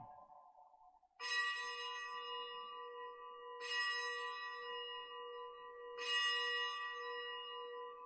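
A bell struck three times, about two and a half seconds apart, each stroke ringing on into the next. It is the consecration bell rung at the elevation of the chalice during Mass.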